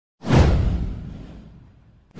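Whoosh sound effect for an intro animation, with a deep boom underneath. It starts sharply a moment in, sweeps down in pitch and fades out over about a second and a half.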